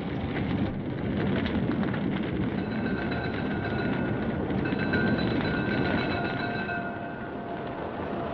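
Radio-drama sound effect of a house fire burning: a dense, steady roar. A few thin, steady ringing tones come in about three seconds in.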